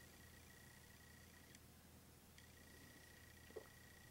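Near silence: room tone with a faint steady high whine.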